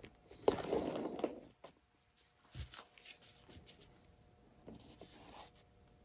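Handling noise from gloved hands and a paper towel: a rustle about half a second in, then a few light clicks and taps, and a shorter rustle near the end.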